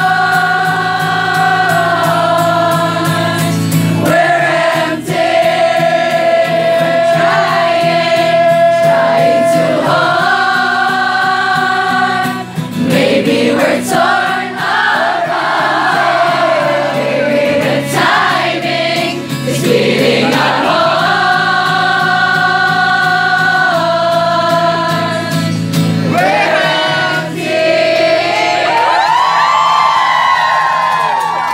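Live pop-rock song chorus: a male lead singer with electric guitar, the crowd singing along in long held notes. The music thins near the end and whoops from the crowd rise.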